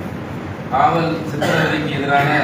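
Speech only: a man talking into the press-conference microphones.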